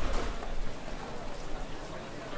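Steady rain falling, a fine even patter, with a low rumble at the start that dies away within the first second.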